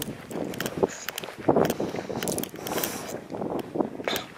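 Wind buffeting the microphone outdoors, with irregular rustles and soft footsteps on grass.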